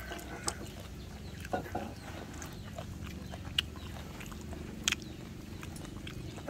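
People eating: spoons and chopsticks clicking against bowls and plates a few times, with chewing, over a steady low background hum.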